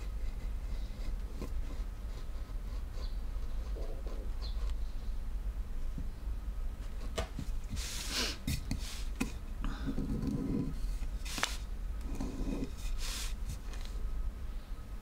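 Small, careful cuts of a hand carving chisel in a wooden printing block, heard as faint scrapes and ticks. About eight seconds in there is a louder scraping rasp as the block is shifted and turned on the bench, followed by low rubbing and a sharp knock.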